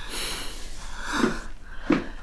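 A young woman breathing hard and straining: a long breathy exhale, then two short effortful grunts, one just past a second in and one near the end, as she drags herself up off the bed, worn out from training.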